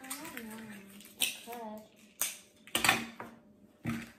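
Plastic eggs and tape handled on a tabletop: four short clicks and knocks, about one, two, three and four seconds in, the one near three seconds the loudest.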